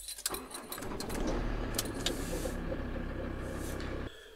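A few key clicks, then a campervan's engine starts and runs at a steady idle.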